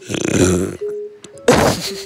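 Two loud, harsh bursts of mouth noise made right against a phone's microphone, about a second apart, with faint piano music playing underneath.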